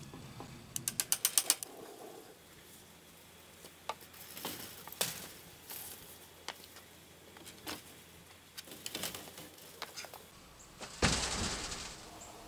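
A quick run of about eight ratcheting clicks about a second in, then scattered single clicks and knocks from work on the metal greenhouse frame, and a short burst of noise near the end.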